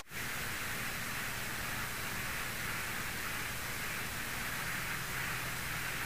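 Steady hiss with the faint, even drone of the Mooney M20E's engine beneath it, in cruise.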